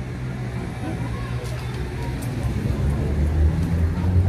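Low rumble of a motor vehicle engine in the street, growing louder in the last second or so.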